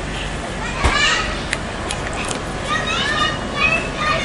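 Outdoor background of children's voices, short high-pitched calls and shouts, with a low knock about a second in and three sharp clicks in the middle.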